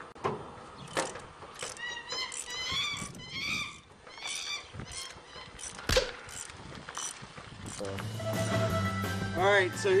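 A few sharp metal clanks from work on a Chevy 454 big-block hanging from an engine hoist, the loudest about six seconds in, over background music that grows louder in the last two seconds with a steady bass line and bending guitar notes.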